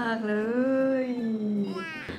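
A woman's voice in a long, drawn-out sing-song exclamation, "น่ากินมากๆ เลย" ("looks so delicious"), its pitch rising and then falling before it fades near the end.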